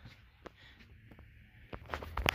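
Faint handling noise: a few light clicks and rustles while a power wire is worked through the engine bay.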